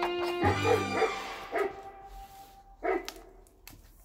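A held music chord breaks off about half a second in and a dog barking sound effect takes over: a quick run of barks, then two single barks, the last about three seconds in.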